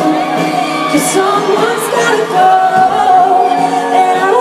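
Live pop ballad performance heard from within the audience: a woman sings over a full band, with the crowd faintly audible. The recording sounds thin and lacks bass.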